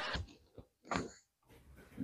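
A man's laughter trailing off, then near silence broken by one short breathy snort about a second in.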